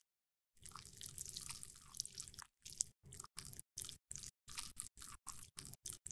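Crisp crackling and crunching of a makeup brush working into homemade pressed blush powder: about two seconds of continuous crackle, then a run of short separate crunches, about two a second.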